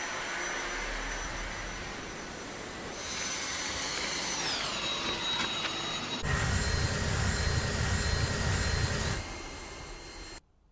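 Dyson cordless stick vacuum running with a steady high whine. A few seconds in its pitch glides down and settles lower. From about six to nine seconds a louder, deeper whirr joins as the floor head works over a hard floor, then fades.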